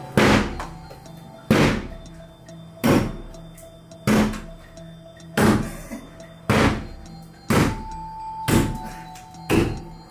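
Axe blows into a wooden wall panel and cabinet: nine heavy, evenly spaced strikes, about one a second, over background music.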